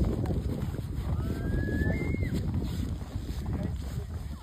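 Wind buffeting the microphone as a steady low rumble, with a thin, whistle-like tone rising in pitch about a second in.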